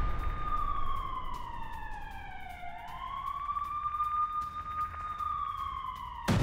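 A siren wailing slowly over a low rumble: its pitch falls over the first few seconds, rises again and holds, then begins to fall near the end.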